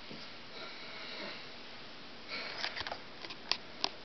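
Faint room tone, then in the last second and a half a short breathy rustle followed by several small sharp clicks.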